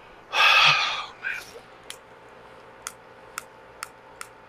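A loud breathy exhale, then four sharp single clicks at irregular intervals of under a second from the push-button igniter of a glass-bead gas fire table, sparking but not yet lighting.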